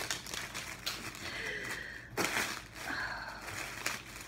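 Packaging being handled in a subscription box: rustling and crinkling, with light knocks and one sharper knock about halfway through.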